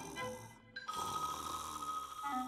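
Soft cartoon background music, then about a second in a steady high tone sets in: a cartoon starfish snoring, fallen asleep.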